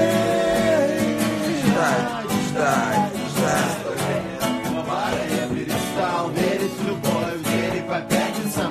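Live acoustic guitar strummed with a man singing along. A long held sung note fades out about a second and a half in, and the guitar and voice carry on.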